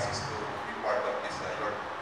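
A man's voice speaking into a handheld microphone in short, broken phrases with pauses between them.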